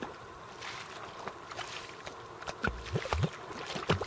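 Wet mud squelching and sloshing: a few scattered clicks, then several louder sucking squelches in the second half.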